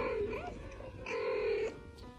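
Cat meowing: two drawn-out meows, the first at the very start and the second about a second in, each about half a second long.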